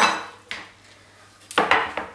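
Kitchen knife knocking against a wooden cutting board: a light knock about half a second in, then a louder clatter about a second and a half in as the knife is set down on the board.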